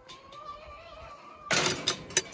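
Metal latch of a wooden gate rattling and clacking in a quick cluster about a second and a half in, as the gate is unlatched. Before it, a faint thin whine rises slightly in pitch.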